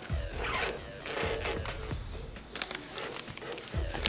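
3M Smooth Transition masking tape being pulled off the roll and laid down in a few short rasping pulls, over quiet background music.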